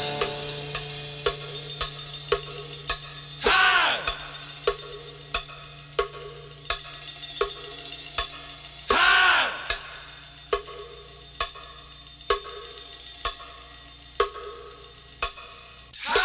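Sparse psychedelic rock break: a lone cowbell ticks steadily, about three strokes every two seconds. Every few seconds a loud echoing whoosh sweeps through.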